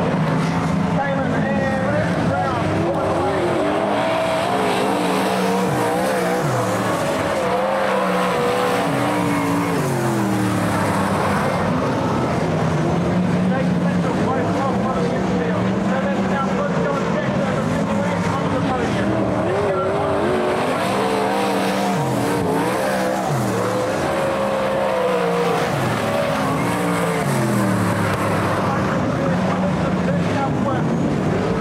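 Engines of several winged open-wheel dirt-track race cars running hard as they lap the speedway. Their pitch repeatedly rises and falls as they accelerate, pass and lift through the turns.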